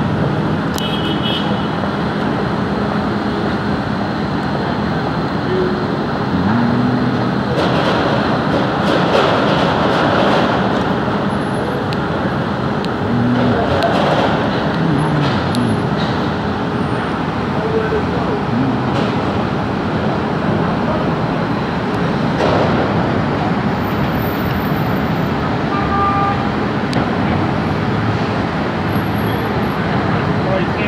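Steady din of construction-site machinery and street traffic, with a few sharp knocks scattered through it.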